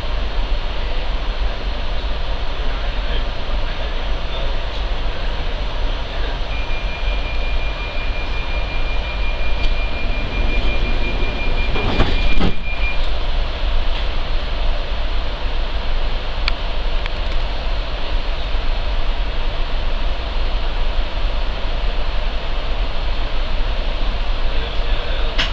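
Interior running noise of a Class 334 electric multiple unit: a steady rumble and rush throughout. A thin high whine holds for several seconds in the middle, and a single loud knock comes about twelve seconds in.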